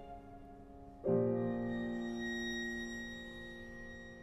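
A piano trio of violin, cello and piano playing slow contemporary chamber music. A quiet held note fades, then a full chord enters suddenly about a second in and slowly dies away.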